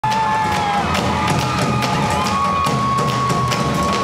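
Live rock band's drum intro: several players beat large white marching-style drums with sticks in a steady beat, over a loud cheering crowd with long held screams.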